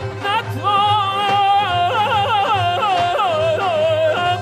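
Male voice singing in Persian classical style, first holding a note with vibrato, then from about halfway through breaking into a rapid, yodel-like ornamented run (tahrir) that steps down in pitch. Sustained instrumental tones accompany the voice.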